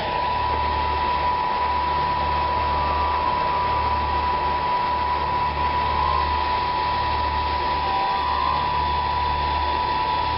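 Miniature wind tunnel's fan running steadily: a constant whir with a high whine over a low hum that dips briefly every three seconds or so.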